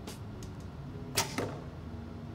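Recurve bow shot: a sharp snap of the string on release about a second in, followed a fraction of a second later by a second, duller knock.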